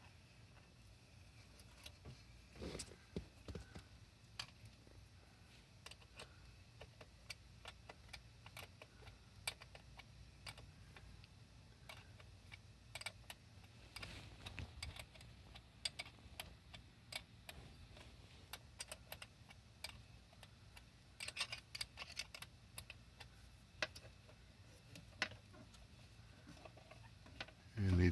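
Faint, irregular light metallic clicks and taps of a small wrench and terminal bolts as the cables are fastened to a motorcycle battery's terminals, some in quick little clusters.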